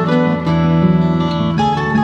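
Music: an instrumental passage on acoustic guitar, with plucked notes changing steadily.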